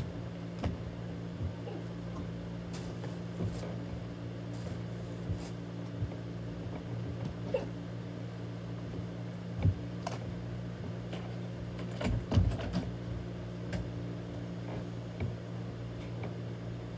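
A steady low hum under scattered knocks and bumps from children moving about and handling a basket on the floor; the loudest knocks come about ten and twelve seconds in.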